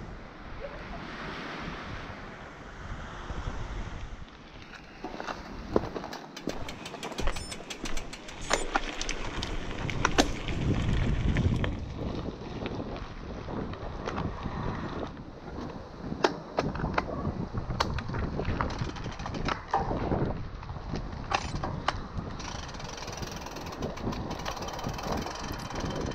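Cannondale mountain bike rolling over a dirt and gravel path, with irregular clicks and rattles from the bike over the rough surface. Wind buffets the microphone, heaviest about ten seconds in.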